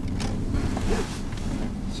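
Low, steady rumble of a car heard from inside the cabin, with a short rustle about halfway through.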